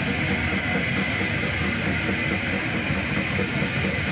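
Heavy metal band playing live: distorted electric guitars over drums in a loud, unbroken wall of sound, heard from within the crowd.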